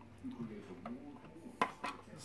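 A few light, sharp clicks, the two clearest near the end, over a faint murmur of voice.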